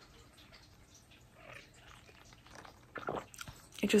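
Faint sipping and swallowing of an iced coffee drunk through a straw from a plastic cup, then a short pitched sound from the throat about three seconds in.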